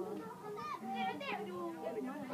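Several children's voices shouting and calling to one another across a football pitch, overlapping and high-pitched.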